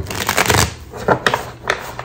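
A deck of tarot cards riffle-shuffled by hand on a wooden table: a fast burst of flicking cards in the first half-second, then a few separate clicks as the deck is gathered and squared.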